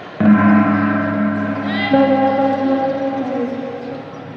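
A gong struck twice, as the round-timing signal of a pencak silat bout: a loud stroke just after the start and a second one a little before two seconds in, each ringing on and slowly dying away.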